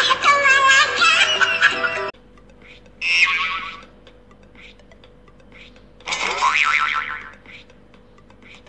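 Lively comic music with cartoon sound effects that cuts off abruptly about two seconds in. Then come two short comic sound-effect bursts, the second sliding upward, with quiet between them.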